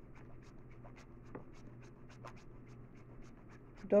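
A bar of soap being grated on a metal hand grater: faint, quick rasping strokes, several a second, in an even rhythm.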